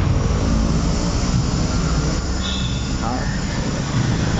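Steady loud rumble of road traffic, with indistinct voices mixed in and a brief high tone about halfway through.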